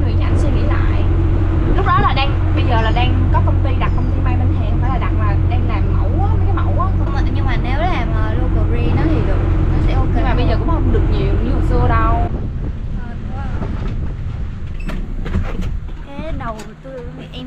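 Open-sided shuttle cart driving along a road: a loud steady low rumble of wind and road noise with a faint steady hum, under a conversation. About twelve seconds in the rumble drops away abruptly as the cart comes to a stop, leaving a quieter background with a few clicks.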